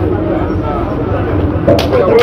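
Voices of people talking at a street scene over a steady low engine hum, with a few sharp clatters near the end.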